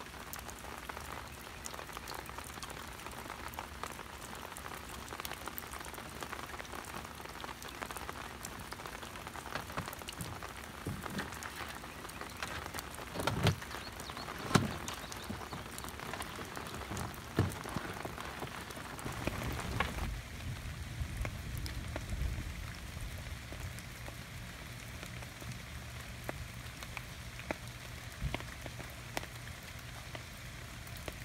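Steady rain pattering, with a few louder knocks about halfway through. From about two-thirds of the way in, a low steady hum joins the rain.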